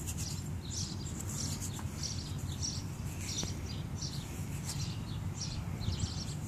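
Small birds chirping, many short high calls repeating throughout, over a low steady background noise.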